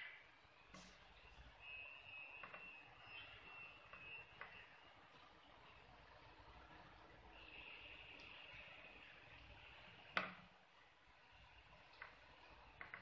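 Near silence: faint handling of a crochet hook and yarn gives a few soft clicks, with one sharper click about ten seconds in. A faint steady high whine comes and goes twice.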